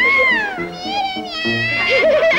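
A high soprano voice singing a wordless phrase, swooping up and then down in pitch and then holding a long high note, over piano accompaniment.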